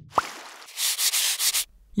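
Animated-logo sound effect: a short rising blip, then a scratchy rubbing swish like a marker scribbling on paper, which cuts off shortly before the end.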